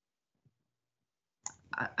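Near silence, then a sharp click about a second and a half in, followed by a person's voice starting to speak.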